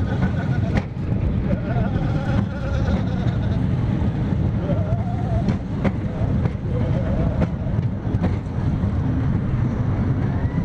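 Roller coaster train climbing its lift hill: a steady low mechanical rumble with occasional sharp clicks, and riders' voices over it.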